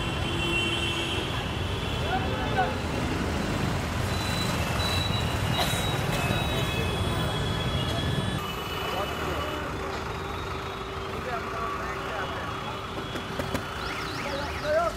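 Busy road traffic: cars and buses running steadily, with indistinct voices of people in a crowd mixed in. The sound changes about eight seconds in, lighter in the low end, with a steady low hum after the change.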